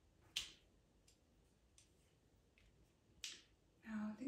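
A few short, sharp ticks and scratches of pastel pencils against near silence: a louder one about half a second in and another near the end, with fainter ones between.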